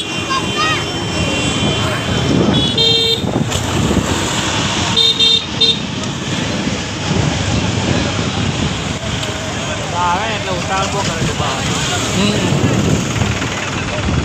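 Vehicle horn honking in busy road traffic: one short blast about three seconds in, then three quick beeps about five seconds in, over a steady bed of engine and road noise with people's voices.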